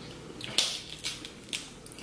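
Snow crab leg shells being cracked open by hand: three sharp cracks about half a second apart, the first the loudest.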